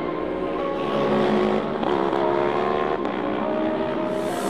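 Racing motorcycle engines running as bikes pass on the circuit, mixed with background music.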